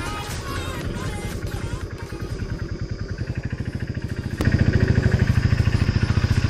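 Motorcycle engine running under way on the road, a steady rapid beat of exhaust pulses. It comes through as background music fades out in the first second or two and turns suddenly louder a little past four seconds in.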